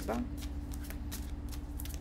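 Tarot cards being shuffled by hand: a quick, irregular run of soft card clicks and rustles, over a steady low hum.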